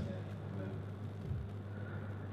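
A pause with no speech: a quiet, steady low hum of room tone.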